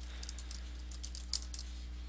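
Typing on a computer keyboard: a short, irregular run of light key clicks over a steady low electrical hum.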